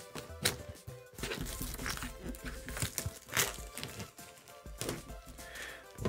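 Clear plastic packaging on a boxed trading-card set crinkling in irregular bursts as it is handled, over quiet background music.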